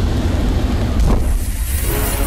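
Film sound effect: a loud, steady low rumble with a rushing hiss over it.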